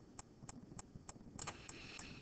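Faint, light clicking from computer input while annotating on screen, about three sharp clicks a second, slightly irregular, over quiet room noise.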